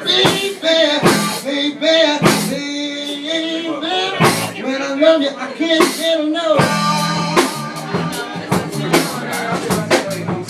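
A live band playing an instrumental passage: electric guitar and bass guitar over drums, with a melodic line that slides between notes and frequent sharp drum strikes.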